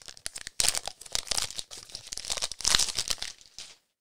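Packaging crinkling and rustling in the hands as the gateway is unwrapped and handled, in irregular crackling bursts that stop shortly before the end.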